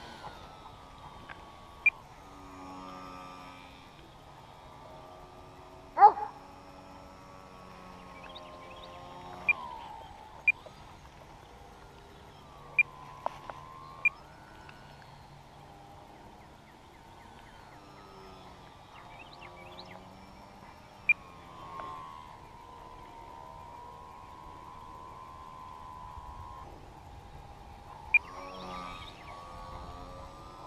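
Radio-controlled model plane's motor and propeller, a steady whine that slides down and back up in pitch several times as the plane passes and changes throttle. A few short sharp sounds break in, the loudest about six seconds in.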